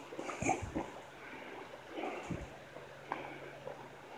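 Soft, irregular footsteps on a dirt and gravel path, over a faint steady rush of flowing stream water.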